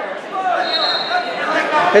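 Spectators and coaches calling out in a gym, their voices echoing in the hall, with a faint steady high tone briefly in the middle.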